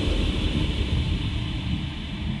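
Drum and bass track in a breakdown: a low, rumbling bass drone under a haze of noise, no drums, slowly fading.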